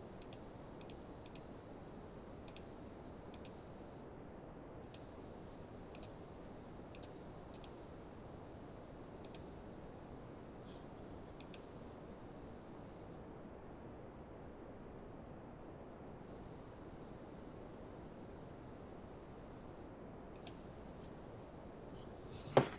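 Computer mouse clicking: single sharp clicks, about a dozen spread irregularly over the first twelve seconds and one more near the end, over a faint steady hiss.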